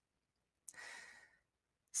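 A speaker's short, soft intake of breath, about half a second long, near the middle of an otherwise silent pause.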